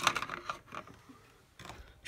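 Light plastic clicks and taps from handling an action figure and a plastic toy stretcher, a few close together in the first half-second and a few fainter ones near the end.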